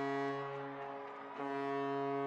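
Ice hockey arena goal horn signalling a goal. It sounds one long steady blast, fades a little about half a second in, and comes back to full strength a little before the end.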